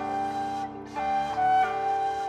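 Shinobue, a Japanese bamboo transverse flute, playing a pop melody in long held notes over a recorded karaoke backing track.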